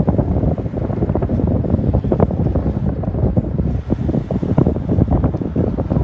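Wind buffeting a phone's microphone: a loud, gusty rumble that rises and dips unevenly.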